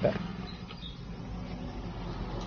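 Faint rustling of paper and cardboard as a booklet is handled and lifted out of a box, over a steady low hum.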